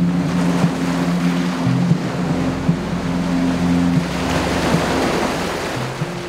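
Shallow surf washing in and splashing over a rocky reef flat around wading legs, with a low steady music drone underneath.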